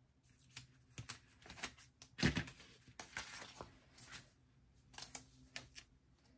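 Paper sticker sheets being handled and a sticker peeled from its backing: faint scattered rustles and light clicks, with one louder knock about two seconds in.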